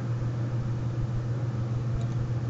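Steady low hum with a faint hiss and no other events: the background noise of the microphone and recording setup.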